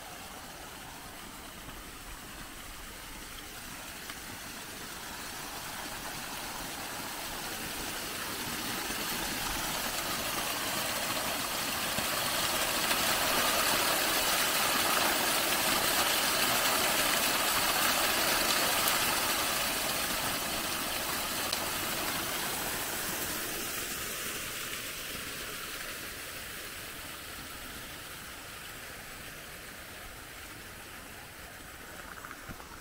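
Small waterfall pouring from a stone-lined outlet into a woodland stream: a steady rush of water that grows to its loudest in the middle, then fades away.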